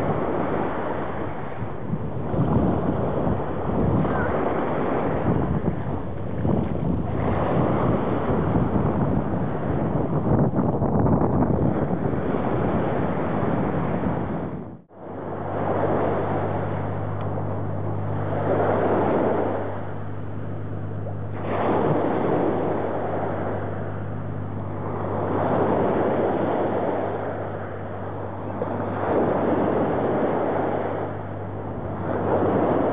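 Small waves breaking and washing onto a sandy beach, with wind buffeting the microphone in the first half. After a brief cut about halfway, the surf rises and falls in swells about every three seconds over a steady low hum.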